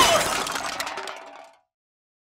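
Cartoon crash sound effect: a smash that trails off in a run of small clinks and dies away about a second and a half in.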